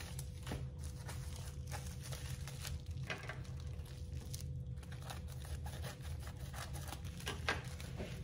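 Paper and thin plastic wrapping crinkling and rustling as small packets are unwrapped by hand, in irregular short crackles, over a steady low hum.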